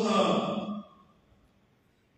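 A man's chanted Arabic recitation holding its final syllable, which stops a little under a second in and fades out in the hall's echo. Near silence follows.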